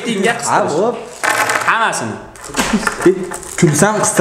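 Speech only: men's voices talking and calling out.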